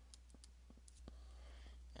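Near silence with a handful of faint, scattered clicks from a stylus tapping and drawing on a tablet screen, over a steady low hum.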